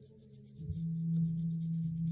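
A girl humming one steady low note with her lips closed, muffled by a washcloth held against her mouth; the hum dips briefly about half a second in, then holds steady.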